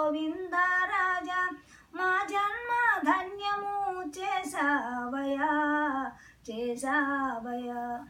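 An elderly woman singing solo and unaccompanied, in long phrases of held notes, with short breaks about two seconds in and about six seconds in.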